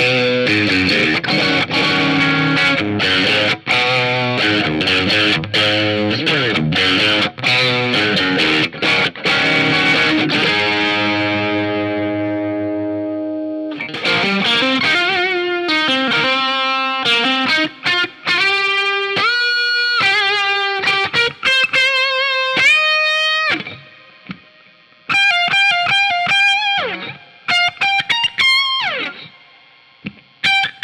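PRS Silver Sky electric guitar with single-coil pickups played through distortion: choppy, fast-struck rhythm chords for about ten seconds, then one chord left to ring and fade. From about halfway in, a single-note lead line with string bends and vibrato, with quicker runs near the end.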